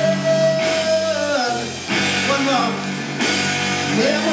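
Live rock band playing electric guitars and drums, with a long held note that slides down about a second and a half in.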